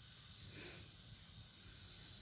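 Faint, steady, high-pitched chorus of evening insects such as crickets.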